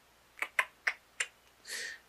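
Four short, sharp clicks, roughly a third of a second apart, then a brief hiss near the end.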